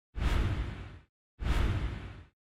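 Two whoosh sound effects, one after the other, each lasting about a second and fading out. They accompany an animated title sequence.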